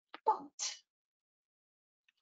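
A woman's voice says a single word, followed by a short breathy hiss, then silence.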